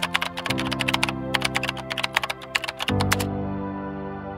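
Background music with sustained chords, overlaid by a quick run of keyboard-typing clicks, a sound effect for a title being typed on screen, which stops a little over three seconds in.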